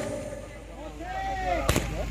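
One sharp bang about three-quarters of the way through from a handheld signal firework (mercon) being set off to mark the release of the kites.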